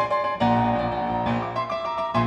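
Piano accompaniment playing held chords in a choral stage number, with a new chord struck about half a second in.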